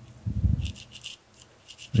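Tips of small wire cutters scraping inside a small gold crimp connector, a quick run of short scratches, clearing out old insulation stuck inside it.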